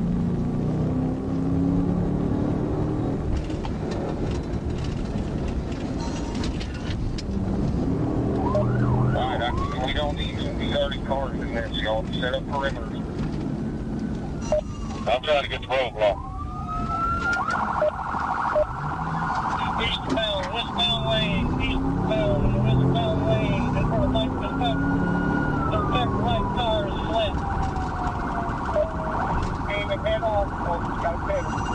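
Police car sirens sounding during a pursuit: rapid warbling chirps start about a quarter of the way in, and slow rising and falling wails from more than one siren overlap through the second half. Beneath them runs the steady engine and road noise of the pursuing patrol car, with a few sharp clicks around the middle.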